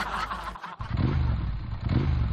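A motorcycle engine revving, starting a little under a second in after a brief break, with its pitch swelling up twice.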